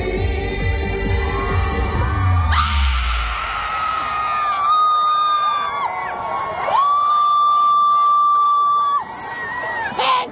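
Live trot song reaching its ending: the beat and bass drop out after a couple of seconds, and a long high note is held, broken briefly once, then stops about a second before the end. Crowd cheering and shouting rises at the very end.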